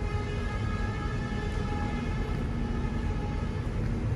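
A steady machine hum: a low rumble with an even, high-pitched whine over it, holding constant pitch and level throughout.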